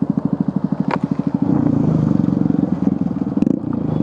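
Motorcycle engine ticking over with an even pulsing beat, then running louder and fuller from about a second and a half in as the bike pulls away.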